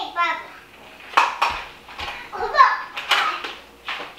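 Toddlers' voices: several short, high-pitched cries and bits of babble, with a couple of dull thumps about a second and a half and two seconds in.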